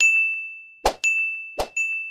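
End-screen animation sound effects: a bright, bell-like ding that rings and fades, heard three times about three-quarters of a second apart. The second and third dings each come right after a short pop.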